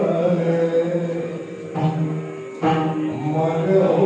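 Yakshagana bhagavata (lead singer) singing a slow devotional invocation in long held notes, with a short break about two and a half seconds in before the next phrase.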